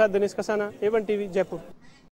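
Speech only: a man speaking Hindi, tailing off about a second and a half in.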